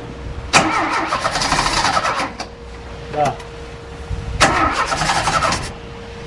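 Chevrolet Chevy 500's 1.6 engine cranked on the starter twice, each try lasting about a second and a half, without catching.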